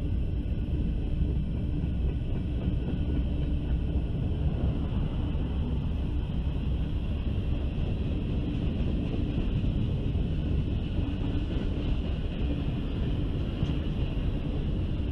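Freight train's covered hoppers and tank cars rolling past, steel wheels running over the rail joints in a steady rumble, with a faint high ring from the wheels on the rail above it.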